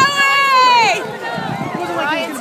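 A person's high-pitched scream, held steady for about a second and then falling away, followed by quieter crowd voices.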